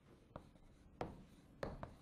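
Chalk writing on a blackboard, faint: a few sharp taps of the chalk tip with short scratching strokes between them.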